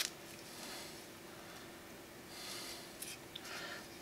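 Ribbon being drawn along a scissors blade to curl it: a soft, quiet scraping hiss a little past halfway, followed by a few light clicks.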